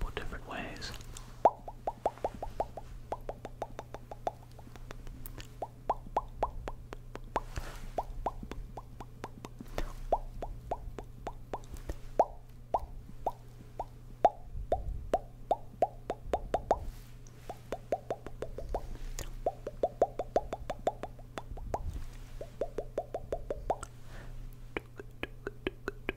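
Close-miked ASMR mouth sounds: runs of quick wet tongue and lip clicks and pops, up to about eight a second, with short pauses between runs, over a steady low hum.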